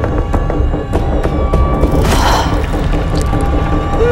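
Trailer sound design: a loud, low, dark drone under a scatter of sharp, irregular clicks and knocks, with a brief rushing swell about two seconds in.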